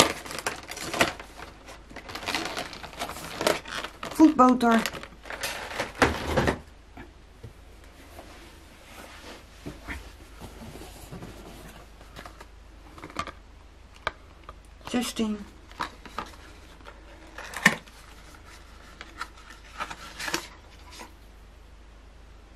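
Cardboard and paper packaging crinkling and rustling as a small advent-calendar box is opened by hand, busiest in the first six seconds, then softer scattered clicks and rustles. A few short spoken sounds come in among it.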